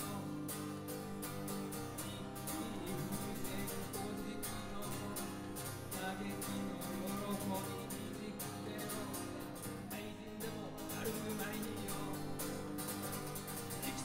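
Acoustic guitar strummed in a steady rhythm, played live as an instrumental passage of a song.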